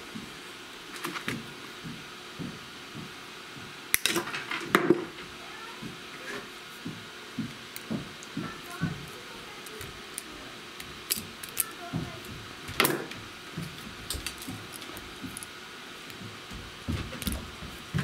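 Hand-tool handling: an auto wire stripper and solid copper wire being worked, giving scattered small clicks and knocks, with sharper clicks about four seconds in and again near thirteen seconds in.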